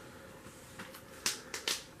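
Comic books being handled as one is put away and the next picked up: a few short, crisp clicks and crinkles over a faint steady hum.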